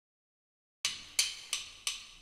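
Metronome count-in ticking at tempo 88, about three sharp, evenly spaced clicks a second. Four clicks begin about a second in, after silence.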